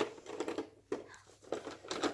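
Plastic toy tools clacking and rattling as they are handled and dropped into a plastic toy toolbox: a few light, separate knocks.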